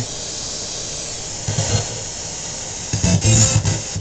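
Spirit box radio sweep: steady static hiss broken by short snatches of broadcast voice or music, once about a second and a half in and again around three seconds in.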